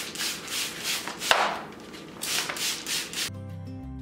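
Trigger spray bottle misting water onto the back of a sheet of paper wallpaper to wet it before it is applied: a quick run of short hissing spritzes, with paper rustling and one sharp click a little over a second in. Background music comes in near the end.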